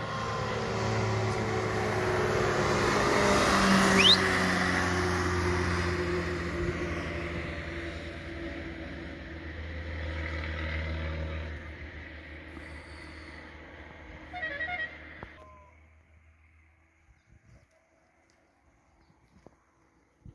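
A motor vehicle passing on a road, its engine hum and road noise swelling to a peak about four seconds in, then fading away. A short toot sounds near the end before the sound cuts off.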